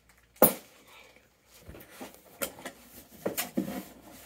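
Plastic packing and a cardboard shipping box being handled during unpacking: one loud short sound about half a second in, then several quieter short rustles and taps.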